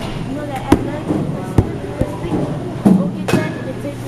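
Several sharp cracks in a batting cage: balls being struck and hitting the cage, with voices in the background.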